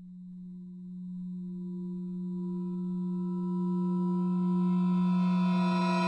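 A sustained low tone on one steady pitch with ringing overtones, swelling steadily louder and brighter as higher overtones come in.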